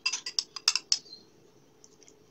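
A spoon clinking on a dish or tray about six or seven times in quick succession within the first second, as tomato sauce is spooned onto pizza dough rounds.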